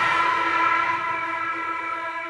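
A held electronic chord of several steady tones sounds on its own in a house remix, with the drums dropped out; it slowly fades.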